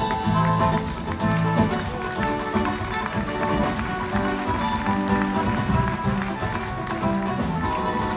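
Live acoustic guitar music in flamenco style: steel-bright plucked runs and strummed chords moving quickly over a repeating low line.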